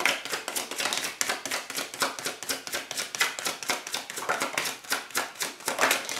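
Tarot deck being shuffled in the hands, the cards giving a fast, uneven run of sharp clicks, several a second, without a break.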